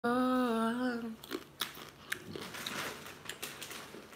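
A woman's voice held on one drawn-out note for about a second, then scattered sharp clicks and mouth noises close to the microphone.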